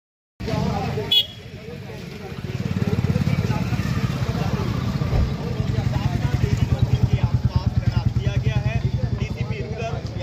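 Motorcycle engine running close by, a steady fast-pulsing idle that comes up about two seconds in, with people talking over it. There is a short sharp sound about a second in.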